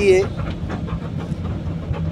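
A motor vehicle engine idling with a steady low hum, heard through a pause in a man's speech; his last word ends just after the start.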